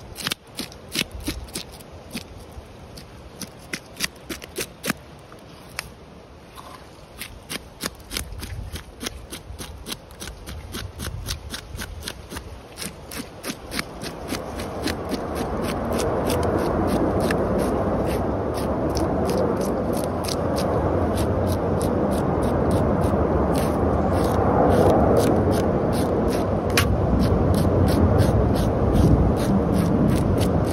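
Knife blade scraping the scales off a red drum: a fast run of short scraping clicks as the scales flick loose. From about halfway a steady lower background noise builds up and holds under the scraping.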